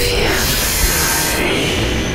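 Static-like noise of a digital glitch transition over music, thinning out about one and a half seconds in.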